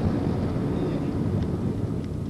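Low, steady rumble of road and engine noise inside a moving car's cabin, slowly fading.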